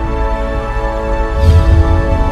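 Intro theme music for a channel logo animation: sustained chords with a whoosh and a deeper swell about one and a half seconds in.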